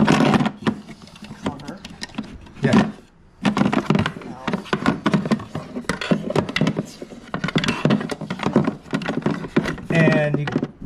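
Hard plastic parts clicking, knocking and rubbing at irregular intervals as hands work a plastic amplifier cover into place.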